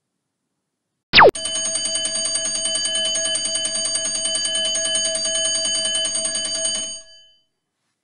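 Countdown timer's time-up alarm sound: a quick falling swoop, then a fast-repeating, bell-like ring held for about five and a half seconds before it cuts off. It signals that the timer has run out.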